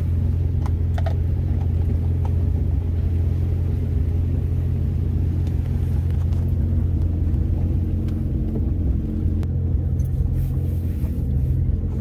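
Jet boat's engine idling: a steady low hum that holds unchanged throughout, with a couple of faint clicks about a second in.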